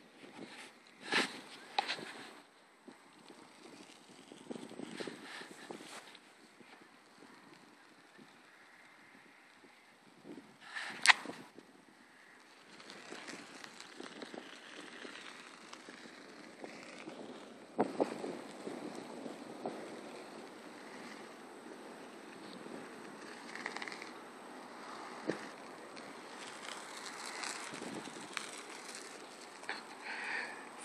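Wind buffeting the microphone in gusts that come and go, faint overall, with a few short rustles or knocks and a nearly silent lull about a third of the way in.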